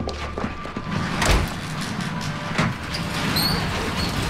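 A door banging and rattling amid a clatter of knocks, with a heavy thump about a second in and another about two and a half seconds in, over music.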